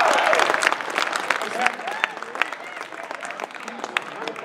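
Audience applauding, the clapping thinning out and fading over the few seconds.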